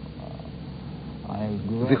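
A pause in speech filled by a steady low hum and hiss; a man's voice starts about a second and a half in.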